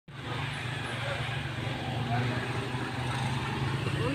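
Steady low hum of a motor vehicle engine running, with general street noise.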